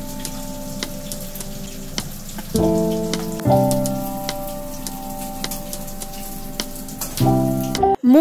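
Fritters crackling and sizzling as they fry in oil in a pan, with irregular pops throughout. Over them runs background music of held chords, which change about two and a half seconds in, again a second later, and near the end.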